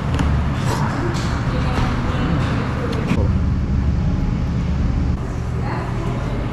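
Steady low rumble of road traffic, with a few short clicks and rustles.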